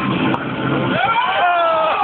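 A person's long drawn-out vocal cry that rises in pitch about a second in and then holds, over fading background noise.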